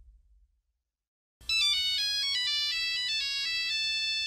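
The tail of a low rumble fades out, and after about a second of silence a mobile phone ringtone starts: a quick, repeating melody of high electronic notes that steps up and down.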